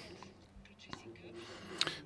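Short pause in a man's speech: only faint, low voice sounds and room tone, with a brief sound near the end just before he speaks again.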